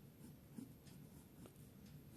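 Faint scratching of a ballpoint pen writing on a paper notebook page, in a few short strokes.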